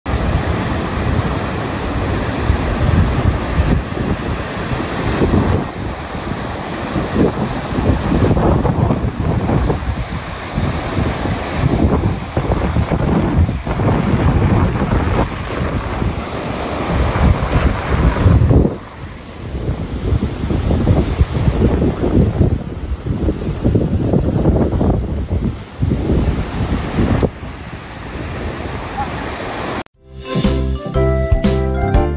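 Wind buffeting the microphone over the wash of surf breaking on a rocky shore. It gusts and eases, with a couple of brief lulls.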